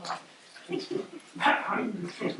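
A man laughing in short bursts, the loudest about one and a half seconds in.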